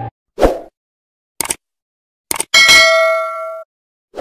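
Edited animation sound effects: a short swoosh, a couple of quick clicks, then a bright bell-like ding that rings for about a second and cuts off.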